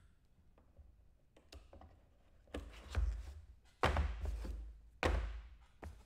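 Cardboard trading-card boxes being handled and set down on a table: a few dull thunks and taps starting about halfway through, the sharpest two near the end.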